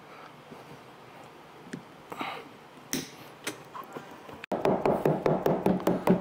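A few faint clicks of tin snips cutting the rubber window trim, then, from about two-thirds of the way in, rapid light knocks, about four or five a second, of a trim mallet tapping the push-on finishing trim onto the cut edge of the aluminium hardtop panel.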